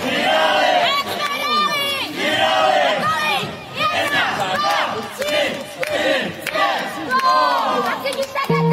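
A crowd of many voices shouting and cheering at once, rising and falling, with no music under it.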